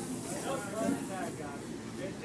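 Spectators' voices chattering over a steady hiss of inline skate wheels rolling on a wooden rink floor as the racing pack passes.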